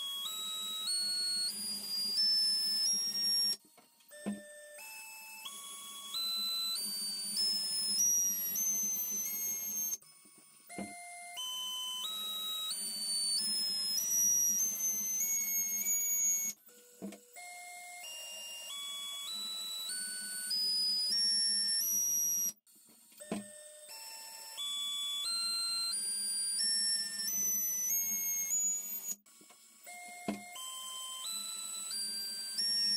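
Brushless T-Motor F60 Pro IV 1750KV motor spinning a 5-inch propeller on a thrust stand, stepped up through its throttle range: in each run a whine climbs in about ten even steps over five or six seconds, then cuts off. Five such runs follow one another, each starting with a short click.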